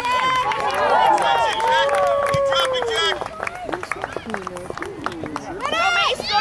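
Several voices shouting and calling over one another during a soccer game, loudest and busiest in the first three seconds, with long drawn-out calls among them.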